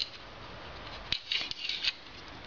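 Apach 9040KT air stapler being handled: a click about a second in, then several short, sharp metallic scraping clicks from its staple magazine and latch.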